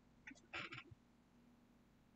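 Near silence: room tone with a faint steady hum and a faint short noise about half a second in.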